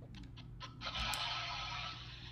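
A rushing hiss of noise on the phone line, lasting about a second after a few faint clicks. The other caller says it sounds like a car being washed, and it is taken for feedback on the phone.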